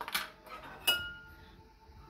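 A metal spoon clinks once against kitchenware, leaving a short, clear ring that fades within about half a second.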